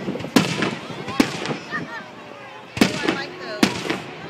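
Aerial firework shells bursting overhead: four sharp bangs, unevenly spaced over the few seconds.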